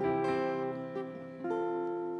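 Steel-string acoustic guitar being fingerpicked: chords are plucked at the start and again about a second and a half in, and left to ring and fade.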